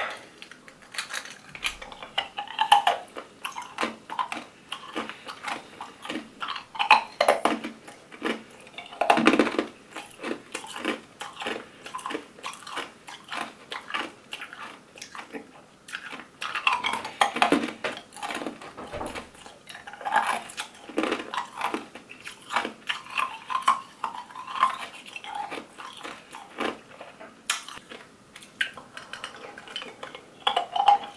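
Ice cubes being chewed and crunched close to the microphone, mixed with clinks of ice against a glass as a straw stirs it, in quick irregular runs.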